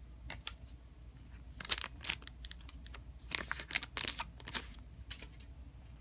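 Pokémon trading cards and a foil booster pack being handled, with quick clicks and rustles as the cards are slid and flicked. They come in two short flurries, about two seconds in and again from about three to nearly five seconds in.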